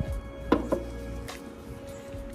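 Two quick knocks, about a quarter second apart, as a takeaway paper coffee cup is handled against the table, with a fainter click a little later, over background music.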